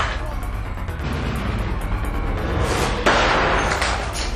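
Background music, with a sudden loud crash about three seconds in: a pistol shot hitting a glass beer bottle, which shatters.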